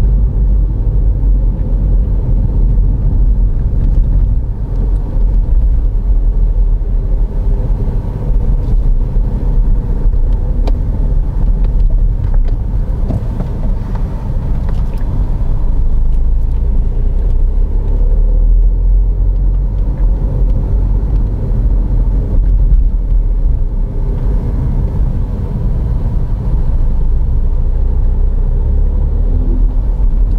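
Mini hatchback driving at town speed: a steady low rumble of engine and road noise.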